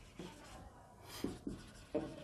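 Marker pen writing on a whiteboard: faint scratching in short strokes.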